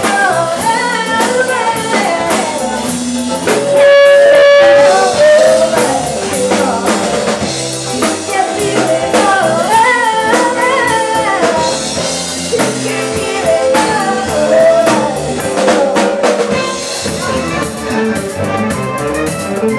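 Live band with a woman singing lead over electric guitars and a drum kit, a blues-rock song. A loud held note about four seconds in.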